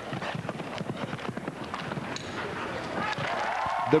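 Show jumper's hoofbeats on grass turf, a quick, irregular series of dull knocks as the horse canters across the arena.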